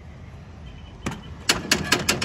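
A quick run of sharp clicks and light knocks, starting about a second in, over a faint low rumble.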